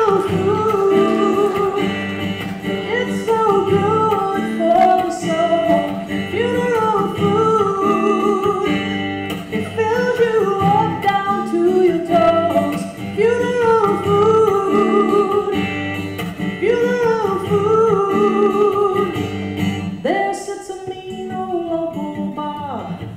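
A woman singing a country-style song to her own acoustic guitar strumming.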